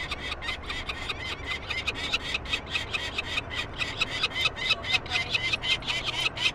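Three-week-old peregrine falcon chick calling in a rapid, even run of short sharp notes, several a second, while held in the hand for banding.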